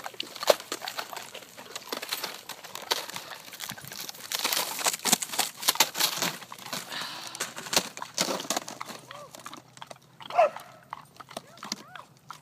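Dog crunching and chewing a large icicle, a run of irregular sharp cracks and crunches that comes thickest in the middle. Near the end comes one short voiced sound that rises and falls in pitch.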